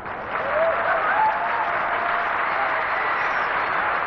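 Stadium crowd applauding, swelling about a third of a second in, with a few cheers rising and falling above it.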